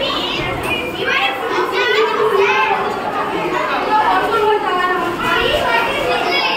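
A roomful of children chattering and calling out all at once, many high voices overlapping without a break.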